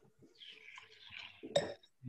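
A person sipping red wine from a glass, with a hissy slurp lasting about a second as air is drawn through the wine, then a short, louder sound about a second and a half in.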